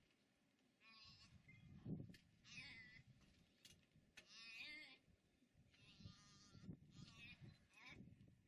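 A gazelle fawn bleating in distress as cheetahs seize it. About five wavering, high-pitched bleats, each about half a second long, come roughly every one and a half seconds.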